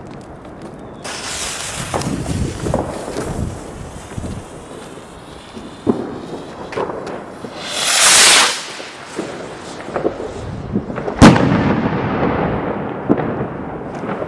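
Signal rocket firework: hissing with scattered small cracks from about a second in, a loud whooshing hiss about eight seconds in, then one sharp, loud bang with a rumbling echo about eleven seconds in, followed by scattered pops.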